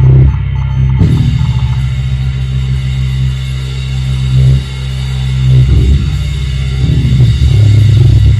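Live band playing loud, heavy sustained low notes on electric guitar and bass, the notes shifting every few seconds.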